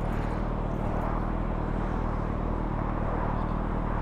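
A stationary motorcycle engine idling steadily, with the continuous rush of freeway traffic passing close by.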